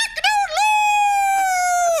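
A man's voice imitating a rooster's loud crow, 'cock-a-doodle-doo': a few short clipped syllables, then one long held final note that drops away at the end.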